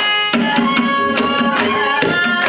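Mridangam playing quick, even strokes, about four a second, under a violin's sustained, gliding melody in Carnatic classical style.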